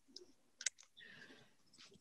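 Near silence broken by a few faint clicks over a video-call line, the sharpest a little over half a second in.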